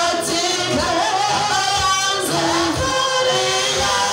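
A woman singing a worship song into a handheld microphone, amplified, over musical accompaniment with a steady low beat.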